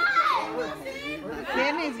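Excited voices of children and adults shouting and laughing over one another, with high, swooping calls.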